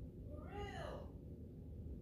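A cat meowing once, a short call about half a second long that rises and then falls in pitch.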